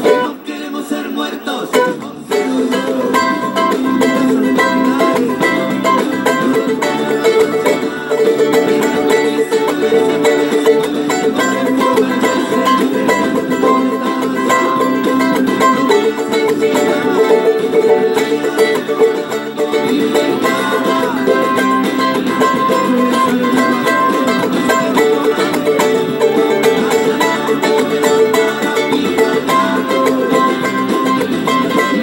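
Charango strummed in a steady cumbia-style rhythm of chords, mixing down and up strokes with muted chuck strokes. The playing thins out briefly about a second in, then picks up again.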